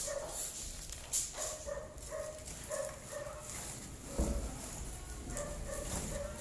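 Short, repeated high-pitched calls from an animal, in small clusters, with a few knocks among them, the loudest about four seconds in.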